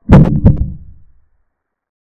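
Chess app's piece-capture sound effect: two short, low thuds about a third of a second apart, dying away within about a second.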